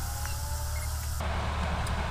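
Steady low hum of background noise, with a layer of hiss that cuts off suddenly just over a second in.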